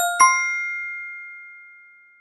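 A bright two-note bell-like chime: two quick strikes about a fifth of a second apart, then a clear tone that rings on and slowly fades away. It is a logo sting sound effect.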